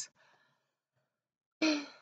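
A pause, then near the end a woman's short breathy sigh that fades away.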